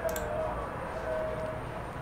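A person yelling out in the street, heard from indoors as drawn-out calls held at a steady pitch, over a low background hum.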